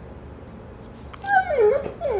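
A golden retriever whining: a drawn-out, wavering whine that starts about a second in, falling and rising in pitch, and carries on past the end.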